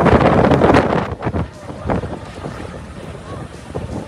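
Strong storm wind buffeting a phone microphone, loudest for the first second and a half and then easing, with faint voices under it.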